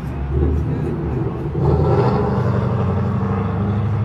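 Motor vehicle engine running with road traffic noise, a steady low rumble that swells about a second and a half in.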